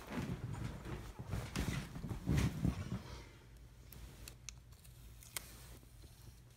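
Handling noise from a phone camera being moved about: irregular knocks and rubbing for about three seconds, then quieter with a few light clicks.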